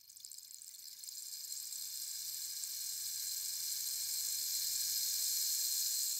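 Steady high-pitched hiss with a faint low hum beneath it, swelling over the first couple of seconds and then holding even.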